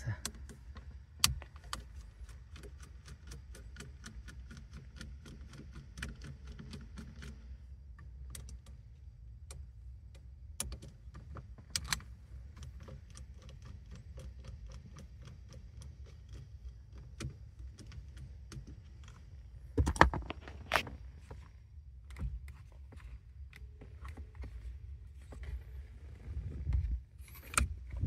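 A hand screwdriver working out the small screws of a steering-column switch and clock-spring housing, making many small clicks and ticks of tool on screw and plastic, fairly regular in stretches. There are a few louder knocks of handled parts, the strongest about two-thirds of the way through and near the end, over a low steady rumble.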